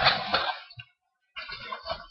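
Cardboard gift box being handled as its lid is lifted open: rustling and scraping of cardboard, in two short stretches with a brief pause about a third of the way in.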